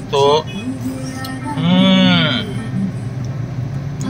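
A man's drawn-out appreciative 'mmm' while tasting a creamy drink, under a second long, rising and then falling in pitch about halfway through. A steady low hum runs beneath it.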